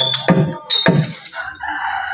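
Hand drum strikes from a street-theatre ensemble, with a ringing metallic tone, stop about a second in. A rooster crows after them.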